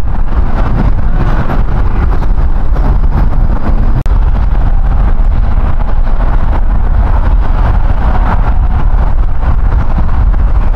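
Loud, steady outdoor rumble of road traffic mixed with wind on the microphone, briefly cutting out about four seconds in.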